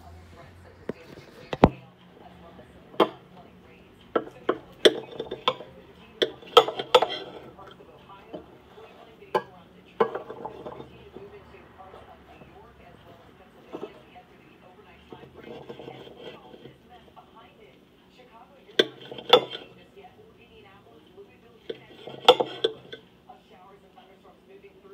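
A knife cutting a scrambled-egg patty in a bowl: irregular sharp clinks and taps of the blade against the bowl, some in quick clusters, over a faint low steady hum.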